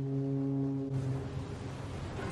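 A ship's horn sounds one long, low, steady blast that fades away about a second and a half in.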